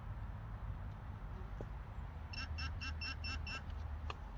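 Metal-detecting pinpointer giving six short, evenly spaced beeps, about five a second, starting a little past halfway. The beeps are its alert for metal close to its tip, here the find in a handful of dug soil.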